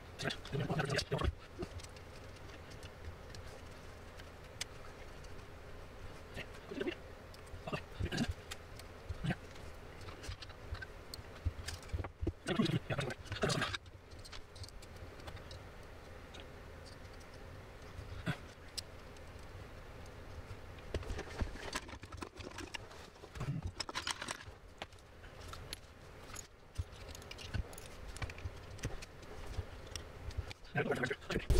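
Hands assembling a small black metal electronics enclosure: irregular clicks, taps and light metallic knocks as the circuit board, cables and case parts are handled and fitted together, busiest about twelve seconds in and again a little past twenty seconds.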